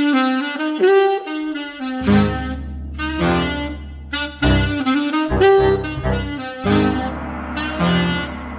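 Glory alto saxophone playing a jazz melody over a backing track. A bass line and low drum hits join about two seconds in.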